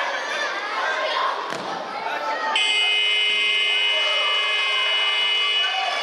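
Sports-hall electronic buzzer sounding one steady tone for about three seconds, starting a little over two seconds in, over children's voices and crowd chatter: the signal for the end of the match.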